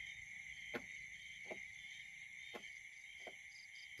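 Faint, steady trilling of crickets in grass, with four faint short clicks spread through it.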